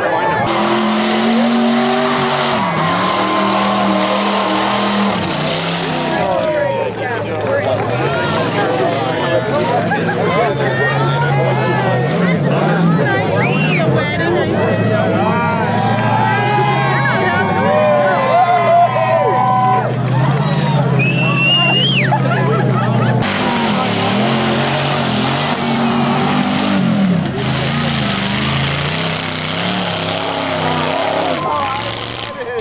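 Engines of mud-bog vehicles revving hard as they drive through a mud pit, the pitch rising and falling, with crowd voices over them.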